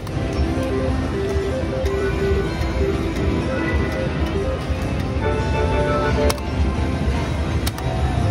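Casino slot-machine floor: electronic slot tunes and jingles over a steady low rumble. Two sharp clicks come in the last two seconds.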